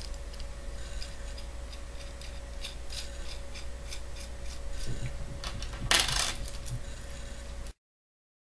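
Small metal nuts and washers clicking and clinking as they are handled and threaded onto a steel threaded rod, with a louder metallic clatter about six seconds in. A faint steady hum runs underneath, and the sound cuts off suddenly near the end.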